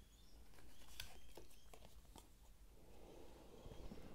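Faint handling of round cardboard oracle cards: a few light clicks and a soft rustle as a card is drawn and held up against another.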